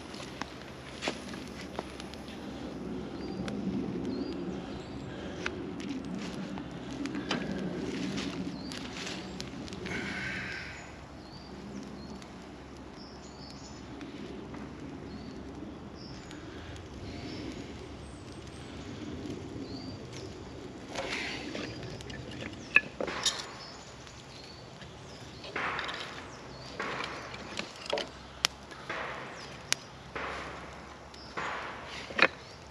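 Small birch-twig kindling fire catching in a steel fire pit, with scattered sharp crackles and pops. In the last several seconds, dry split sticks clack and knock as they are laid onto it.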